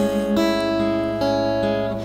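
Acoustic guitar playing an instrumental passage: a chord rings out, changes to another about a third of a second in, and is left to ring, slowly fading.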